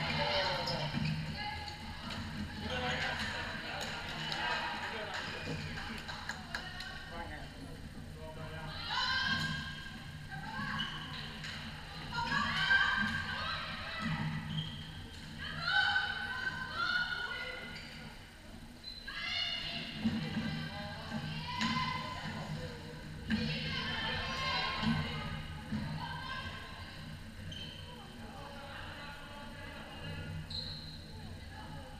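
High-pitched shouts and calls from players and people courtside during a floorball game, several short cries that fall in pitch, echoing in a large sports hall over a steady low hum.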